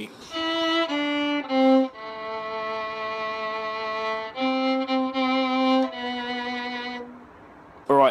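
Solo violin, bowed, playing a slow phrase of separate notes: three short descending notes (E, D, C), a long held A, then three repeated Cs and one more note, dying away about a second before the end.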